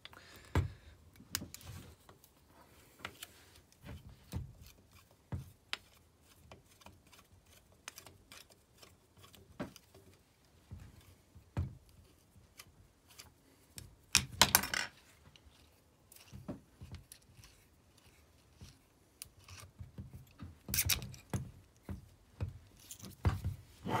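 Screwdriver backing screws out of an electric motor's aluminium end cap: scattered small clicks, scrapes and knocks of metal on metal, with a louder clatter a little past halfway.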